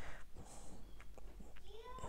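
A faint child's voice from elsewhere in the house: a short call that rises and falls in pitch near the end, with a few soft clicks before it.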